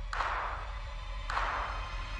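Movie trailer score between spoken lines: a low bass drone with two sharp percussive hits, about a second and a quarter apart, each fading out.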